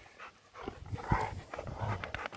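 Dog panting in a few short breaths, starting about half a second in.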